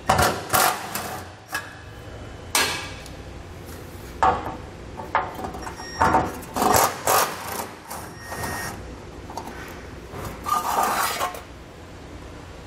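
Cordless power tool with a 10 mm socket running in several short bursts as it backs out the bolts holding the truck's heat shield, mixed with clanks and scraping as the loosened heat shield is handled and pulled free.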